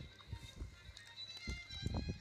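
Soft background music with long held high tones, over a few soft, low thumps.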